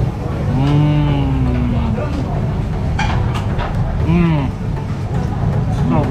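A man's long, slightly falling 'mmm' of enjoyment while tasting food, then a shorter rising-and-falling 'mm' about four seconds in, over steady low background noise with a few clicks.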